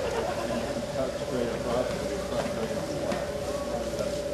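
Background chatter of people talking, with a steady mid-pitched hum running underneath.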